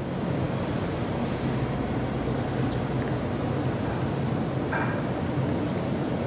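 A steady rushing noise, like surf or wind, holding level throughout.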